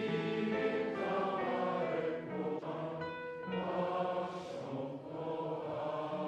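A choir singing with long held notes in a church.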